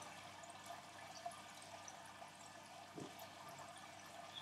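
Near silence with a faint steady hiss, broken by one soft tap about three seconds in as the stiff card pages of a fold-out Blu-ray collection book are handled.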